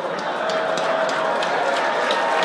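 Audience applauding, many hands clapping irregularly over a low murmur of voices.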